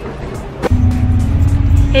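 Background music; less than a second in, a sudden switch to a steady low rumble of car engine and road noise heard from inside the cabin.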